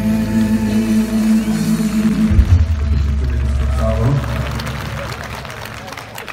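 Live band's closing chord held and ringing out, with a deep bass note joining about two seconds in and stopping about four seconds in, after which the sound fades away.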